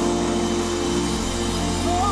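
Live soul band playing an instrumental passage: held chords over a steady bass line, with the bass dropping out briefly about a second in.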